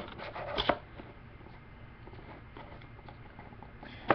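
Fingers handling a trading-card box and working its lid loose: a few light scrapes and clicks in the first second, then faint rubbing.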